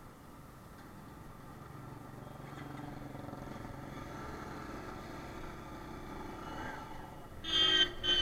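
Motorcycle engine running under road noise while riding in traffic, its pitch rising slightly in the middle. Near the end a vehicle horn honks twice in quick succession, the loudest sound.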